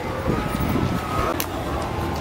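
Outdoor fairground background noise: a steady low rumble with faint voices, a faint held tone in the first half, and one sharp click about a second and a half in.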